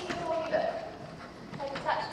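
Horse's hoofbeats on the soft footing of an indoor arena, a few knocks, under a person's voice speaking indistinctly.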